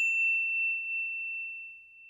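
A single high, bell-like ding sound effect ringing out on one pitch and fading slowly away.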